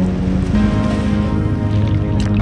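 Instrumental background music with long held notes.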